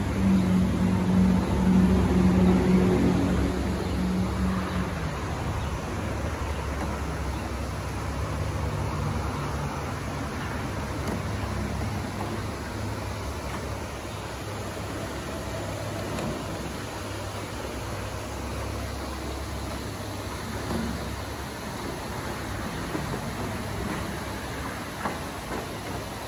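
A small fishing boat's motor running at low speed, a steady low hum over a wash of noise; its louder, higher hum drops away about five seconds in, leaving a lower, quieter hum.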